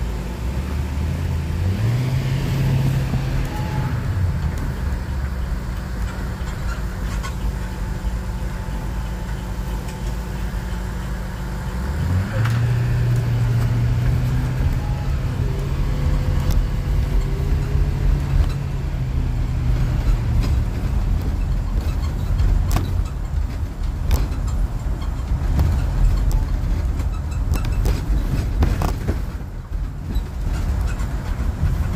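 Motor vehicle's engine and road noise heard from inside while driving along a street. The engine pitch climbs as it pulls away about two seconds in and again about twelve seconds in, then holds steady before fading back into the road rumble.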